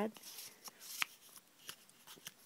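Card stock and paper pieces of a chipboard mini album being handled and slid against each other: light rustling with a few soft clicks and one sharper tap about a second in.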